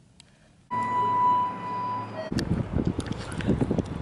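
A steady electronic beep from an elevator, held for over a second with a faint hum under it, followed by a short lower tone. Then, after a cut outdoors, wind rumbles on the microphone with some handling clicks.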